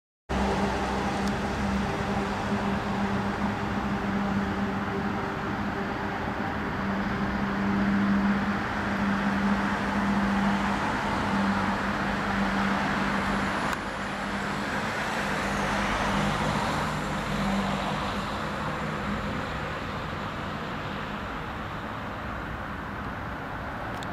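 Road traffic noise: a steady rumble of vehicles with a steady low hum that fades out near the end. A vehicle passes closer around the middle.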